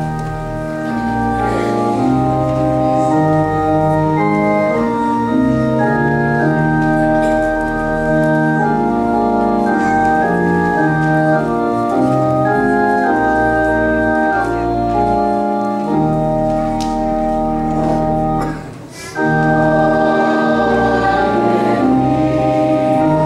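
Church organ playing held chords, the hymn's introduction, with a short break about three seconds before the end before the chords resume.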